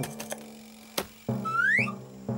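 Cartoon music and sound effects: a held note fades out, then a sharp click comes about halfway. After it a bouncy low plucked rhythm starts, with a short rising slide-whistle glide over it.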